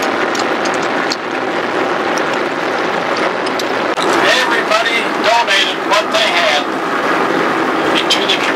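Steady road and engine noise of a moving car, heard from inside the cabin. A voice speaks indistinctly over it about halfway through.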